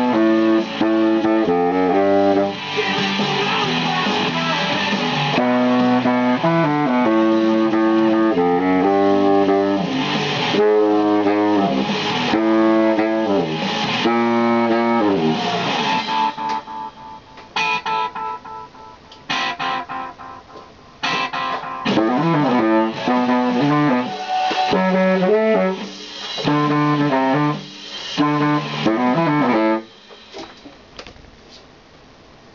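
Yamaha YBS-62 baritone saxophone playing along with a loud rock recording full of electric guitars. About halfway through, the music breaks into short, clipped chords with gaps between them, and it stops suddenly at the end.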